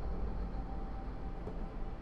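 Steady low background hum with no distinct sounds in it.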